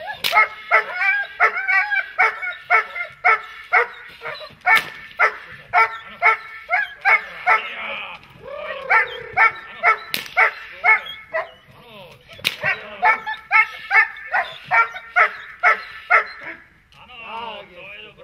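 Young German shepherd barking over and over at a protection-training helper, about two to three barks a second with a couple of short breaks. A few sharp cracks ring out among the barks, and the barking stops about a second and a half before the end.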